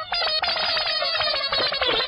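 A short music cue: a quick run of plucked notes stepping down in pitch.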